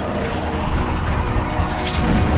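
A jet aircraft passing over in a swelling rush of noise with a deep rumble, laid over film-trailer music, with a sharp crack near the end.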